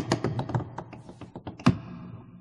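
Tap shoes striking a wooden stage floor: a quick flurry of sharp taps that thins out, with one loud strike near the end.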